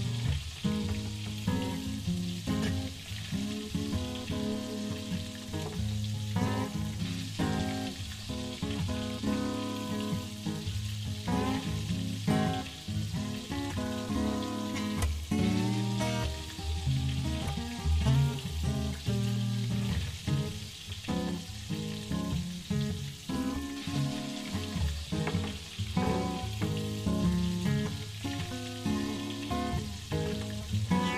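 Pancakes sizzling in oil in a nonstick frying pan over low heat, with background guitar music playing throughout.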